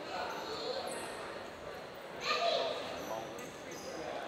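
Indistinct voices of people talking in a large echoing hall, with one voice standing out louder a little past halfway.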